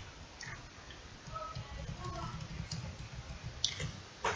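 Faint low background rumble with a few soft clicks, the clearest near the end.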